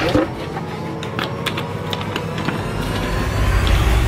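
Small clicks and rattles of a key turning in the lock of a small box and its lid being opened, with a low rumble swelling up near the end.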